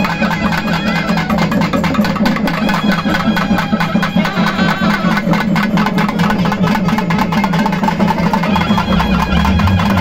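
Folk drummers beating double-headed drums with sticks in a fast, driving rhythm over a steady low drone.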